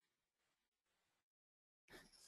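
Near silence: a pause in the narration.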